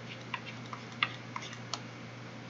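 Pen stylus tapping and scratching on a tablet screen while handwriting: five light clicks about three a second, the sharpest about a second in, over a steady low hum.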